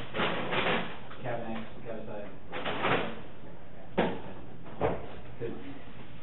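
Indistinct voices in a small room, with two sharp knocks under a second apart about four seconds in.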